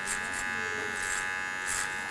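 Electric hair clipper running with a steady buzz as it cuts hair over a comb, with three brief crisper bursts as the blade bites through the hair.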